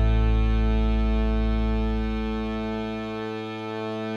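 The band's final chord, held and ringing out, slowly fading. The low bass note dies away about three seconds in.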